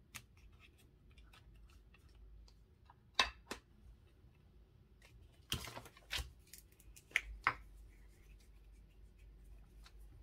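Scattered light clicks and taps of craft tools and paper being handled and set down on a cutting mat, about seven in all, with a short scrape in the middle.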